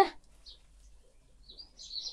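A small bird chirping faintly and high-pitched, with one short note about half a second in and a brief run of chirps from about a second and a half in.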